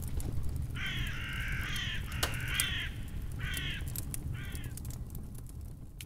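A crow cawing: about five harsh caws in the first five seconds over a steady low rumble, with one sharp click in between.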